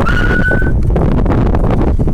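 Wind buffeting the microphone of a camera on a moving bicycle, a loud steady rumble throughout. In the first moment a short, thin, high whistle-like tone sounds and edges slightly upward.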